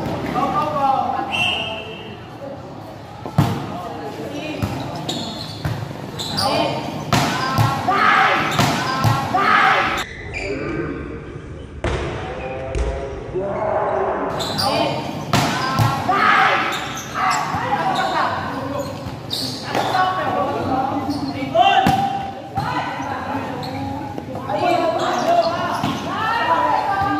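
Volleyball rally: repeated sharp hits of the ball off players' hands and arms, a few of them loud, mixed with near-constant shouting and chatter from players and spectators, echoing in a large covered court.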